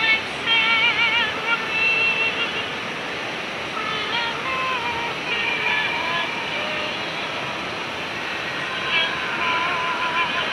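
A high voice singing slow, long held notes with a strong wavering vibrato, in several drawn-out phrases over a steady rushing hiss.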